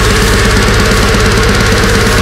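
Deathcore band playing: heavily distorted, low-tuned electric guitars over fast, even kick-drum strokes, loud and dense throughout.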